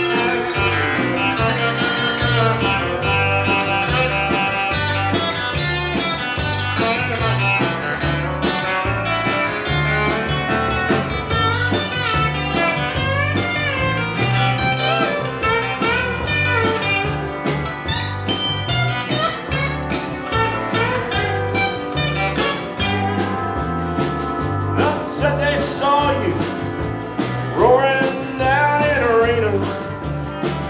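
A live country band playing an instrumental break: pedal steel guitar, electric guitars, bass and drums over a steady beat, with lead lines that bend and slide in pitch.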